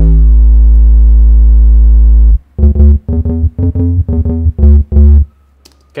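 A bass instrument loop sample at 90 BPM playing back loud: one long held low note for about two and a half seconds, then a run of short clipped notes that stops about five seconds in.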